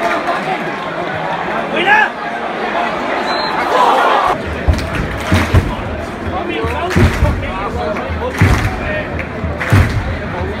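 Football stadium crowd: a steady hubbub of supporters' voices and shouts around the microphone. About halfway through the low end changes and a few short thumps follow, roughly every second and a half.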